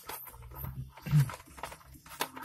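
Clicks and rustling of plastic parts and cables being handled in a parking-sensor kit box, with a brief low hum from the man about a second in.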